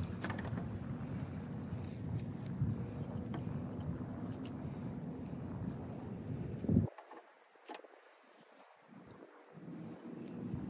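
Steady low engine-like rumble, as of a vehicle running, that cuts off abruptly about seven seconds in. Faint clicks and rustles of handling follow.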